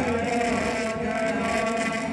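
Male voice holding one long sung note of a Hindu aarti hymn over a steady low hum.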